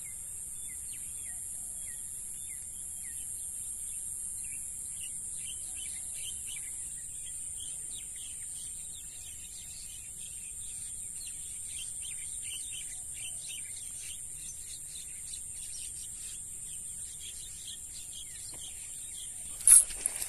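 A steady high-pitched insect drone with many short chirping bird calls over it. A sudden loud noise comes right at the end.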